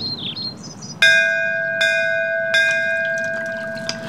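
A temple bell struck three times, about three-quarters of a second apart. Each stroke rings on with a clear, steady tone that carries to the end, the first stroke the loudest. It is rung in worship before prayer at a Shiva shrine.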